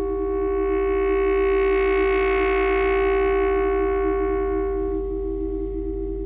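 Alto saxophone holding one long note that swells louder and brighter through the middle and then fades, over a wavering electronic tape drone pitched just below it and a steady low hum.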